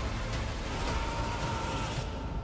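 Movie-trailer soundtrack: a steady dark rumble and hiss of sound design, with a faint high held tone coming in about a second in.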